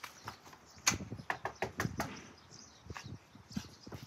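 Footsteps on concrete steps and at a front door: a scatter of irregular taps and knocks.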